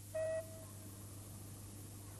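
A single short, clear tone lasting about a quarter of a second, heard just after the start, over a faint steady low hum.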